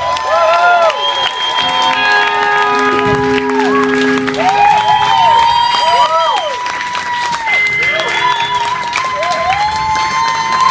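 Electric guitars in a live rock band holding long notes with repeated swooping bends up and down, the drums and bass having dropped out, in a drawn-out song ending. Crowd applause and cheering rise underneath.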